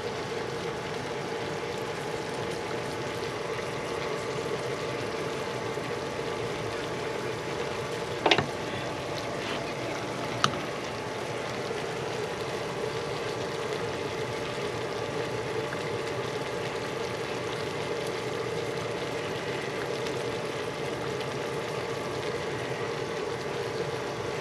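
Chicken pieces frying in a pan on a gas hob, a steady sizzle, with a short knock about eight seconds in and a click about two seconds later.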